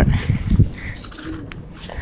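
Handling noise from fingers rubbing and bumping against a phone held up close: low thumps in the first half-second, then a few faint clicks.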